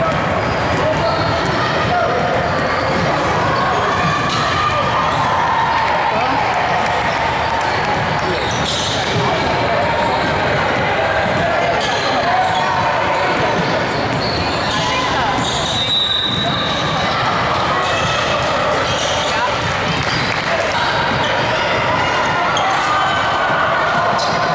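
Basketball bounced on a hardwood gym floor at the free-throw line, over steady crowd chatter and voices in the gym. A brief high whistle sounds about two-thirds of the way through.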